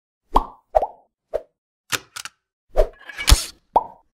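Animated logo intro sound effects: a quick, uneven string of about eight short cartoon pops and plops with silence between them, the loudest near the end carrying a brief noisy swish.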